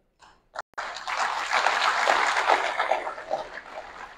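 Audience applause rising about a second in, then gradually dying away.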